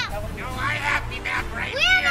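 A group of children shouting and yelling in high voices. The calls are fainter in the middle, and a new high yell rises near the end.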